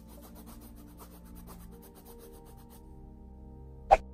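Flat paintbrush scrubbing grey paint onto a canvas in quick, even strokes, about eight a second, stopping about three seconds in. A sharp knock just before the end, louder than the brushing.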